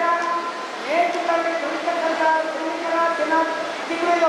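A man's speech delivered loudly into a handheld microphone over a public-address system, with long, drawn-out vowels in an oratorical style.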